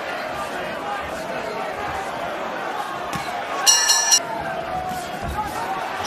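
Arena crowd murmur running steadily, with the boxing ring bell ringing briefly about two-thirds of the way through, a short high metallic ring that marks the change of rounds.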